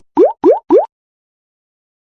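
Three quick rising 'bloop' pop sound effects in the first second, each a short tone gliding upward in pitch, evenly spaced.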